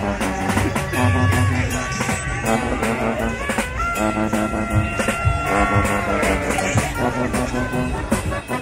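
Small tailgate brass band playing a tune: trombone, sousaphone and saxophone over a plucked guitar, with a repeating bass figure and a long held horn note about halfway through.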